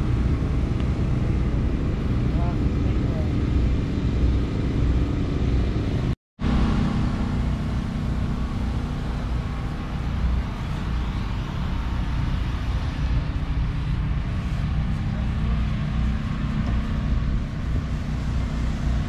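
Dirt-track modified race car's engine idling with a steady low rumble; the sound cuts out completely for a moment about six seconds in, then resumes.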